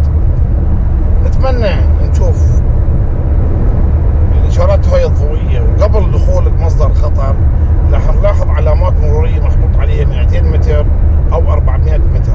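Car driving, heard from inside the cabin: a loud, steady low rumble of road and engine noise with a man's voice talking over it.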